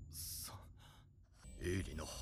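A short breathy sigh near the start, then a lull and faint speech beginning near the end.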